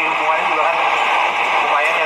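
Speech from a man talking into a handheld microphone over a public-address system, heard through a phone live stream's compressed audio with a constant noisy haze behind it.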